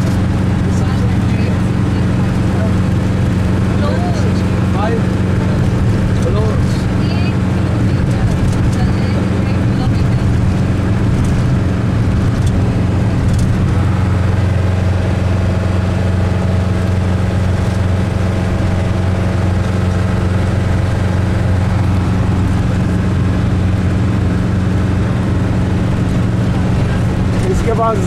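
Steady low drone of a vehicle's engine and road noise heard from inside the moving vehicle's cabin.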